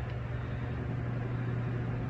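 A steady low machine hum with a soft, even hiss under it, unchanging throughout.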